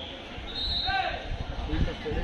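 Voices at a kabaddi ground: a man calling over a loudspeaker. A steady high tone runs for about half a second in the first second, and a few low thuds come near the end.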